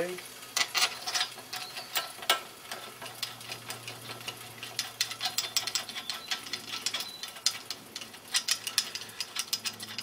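Long steel bolts being wound by hand into an alternator's end casing: an irregular run of small metallic clicks and rattles as the threads and bolt heads knock against the housing.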